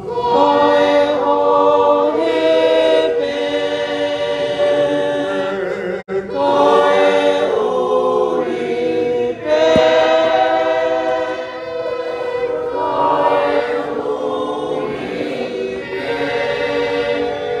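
A choir singing a hymn in several-part harmony on long held notes, with a brief break about six seconds in.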